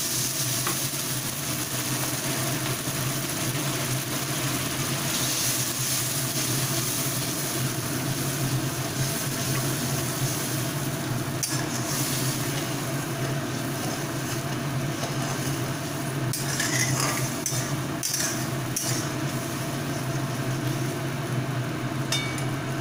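Spiced masala gravy sizzling and bubbling in a kadai after a cup of water has gone onto the fried spice paste, stirred with a spatula that clicks against the pan a few times in the second half. A steady low hum runs underneath.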